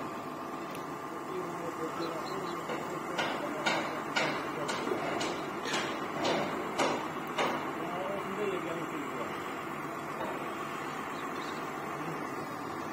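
A run of sharp knocks, about two a second, over a steady background hum, with faint voices in the background.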